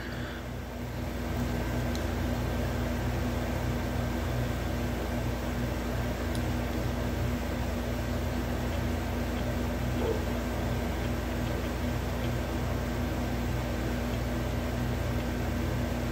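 Dremel rotary tool running steadily as it cuts into a piece of wood, burning the wood slightly at the cut.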